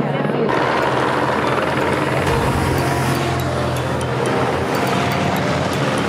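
A helicopter overhead and an escort motorcycle's engine approaching along the street, with a steady low hum that grows stronger after about two seconds, over spectators talking.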